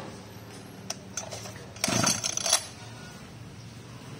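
Handling clatter from a Robin BF25 brush cutter: a few sharp clicks, then a short, louder rattle near the middle, with its engine not yet running, over a faint steady hum.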